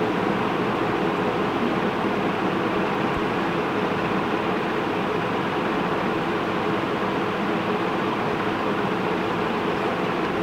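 Steady, even background noise with a faint hum and no distinct events.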